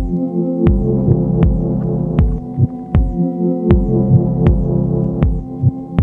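1010music Blackbox sampler playing its loops: a slow, even beat with a low drum hit about every three-quarters of a second over sustained synth chords and bass.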